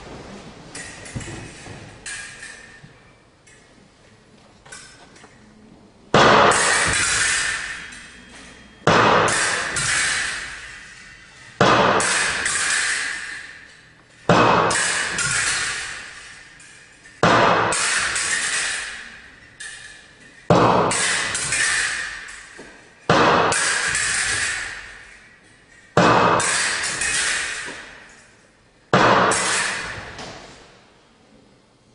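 Fencing swords clashing together in unison, a sharp clash about every three seconds that rings on and fades over about two seconds in a large hall; the first few seconds are quieter.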